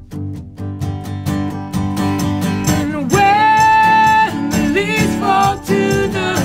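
Acoustic band music: two acoustic guitars strummed over a cajon beat. A voice holds one long sung note from about three seconds in, and shorter sung notes follow near the end.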